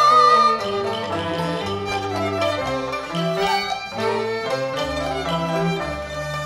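Cantonese opera (yuequ) accompaniment ensemble playing an instrumental interlude between sung lines: bowed strings such as violin carry the melody over plucked strings and sustained low bass notes.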